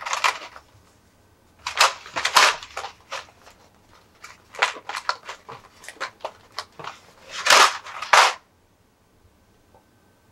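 Thin plastic blister tray crackling and clicking as small figure accessories are pried out of it, in several bursts of sharp crinkles. It stops about eight seconds in.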